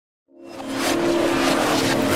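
Opening of intro music: after a moment of silence, a rush of noise fades in and builds over a sustained low chord.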